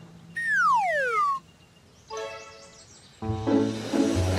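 Cartoon sound effect: a whistle-like tone falls steeply in pitch for about a second. A short held musical chord follows, and background music comes back in near the end.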